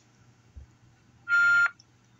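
A single short telephone beep, a bit over a second in and lasting under half a second, on a call that is on hold for transfer. A faint steady line hiss lies under it.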